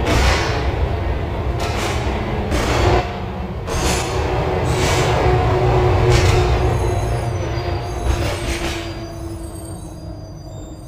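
Running noise inside a moving tram: a steady low rumble with a faint motor whine and short bursts of hiss every second or so. It grows quieter over the last few seconds as the tram slows toward a stop.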